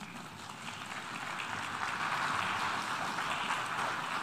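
A large hall audience applauding: many hands clapping, building up over the first two seconds and then holding steady.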